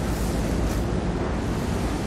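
Steady rumble and hiss of background noise, even throughout, with no distinct knocks or clicks.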